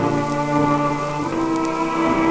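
Late-1920s dinner-music ensemble record playing, strings holding sustained chords, with faint crackle from the old recording's surface.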